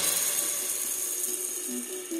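Electronic music in a break: the heavy dubstep section has just cut off, leaving a fading, noisy wash with a high held tone. Near the end, a quiet run of short synth notes comes in.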